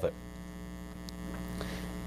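A steady electrical hum with several held tones: the background room tone of a lecture hall sound system during a pause in speech.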